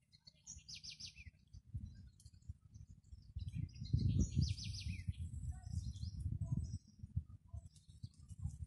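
Birds calling twice, each time a quick run of high, falling chirps, about half a second in and again around four seconds. Under them runs a low rumble, loudest around the middle.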